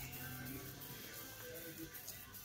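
Faint background music with slow, held notes, playing over a store's overhead sound system.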